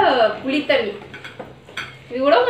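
A few light clicks and knocks of crisp puris being picked out of a plastic bowl at the table, after a voice trails off at the start.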